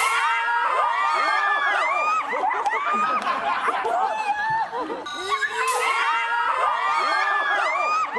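A group of young women shrieking and squealing together, mixed with laughter. The same burst of screams starts over about five seconds in, as a replay.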